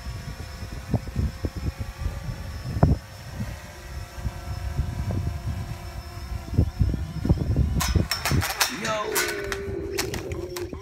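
Wind buffeting the microphone in gusts, over the faint steady hum of a DJI Phantom 3 quadcopter's propellers. Near the end come a run of sharp clicks and a short falling tone.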